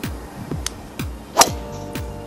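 Background music with a steady beat. About one and a half seconds in comes a single sharp crack: a driver striking a golf ball off the tee.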